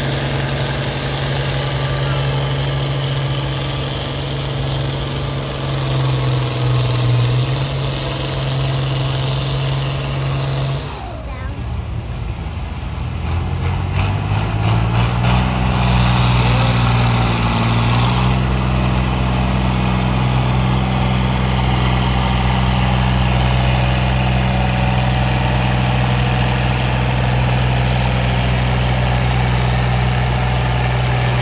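Diesel farm tractor engines working under load, pulling a weight sled. First an International Harvester Turbo holds a steady note. Then, about halfway through, a John Deere engine climbs in pitch for a few seconds and settles into a steady, loud full-load note.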